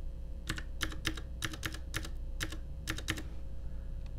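Computer keyboard being typed: a quick run of about a dozen keystrokes entering a long string of digits, stopping a little after three seconds in.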